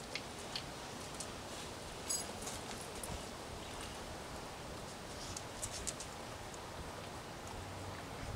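Pit bull eating french fries off a concrete patio: faint, irregular clicks and smacks of chewing and licking, over a steady outdoor hiss.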